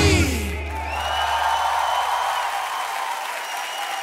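The live band's final chord dies away, its low bass note fading over the first second and a half, and audience applause takes over.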